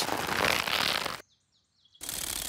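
Cartoon sound effect of a toy aeroplane's rubber band being wound up by its propeller: a steady rasping whirr that cuts off suddenly a little over a second in.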